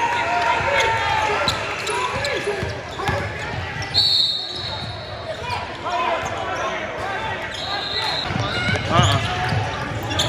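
Live court sound in a gym: a basketball bouncing on the hardwood and other short knocks, under a constant hubbub of players' and spectators' voices echoing in the hall. Two brief steady high tones cut through, about four seconds in and again near eight seconds.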